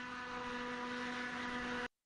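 Steady ship machinery hum: a low, even drone over a hiss. It cuts off abruptly just before the end.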